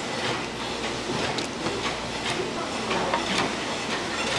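Kitchen knife chopping green onion on a thick wooden cutting board: a run of short, sharp knocks at an uneven pace of about two or three a second, over a steady background hiss.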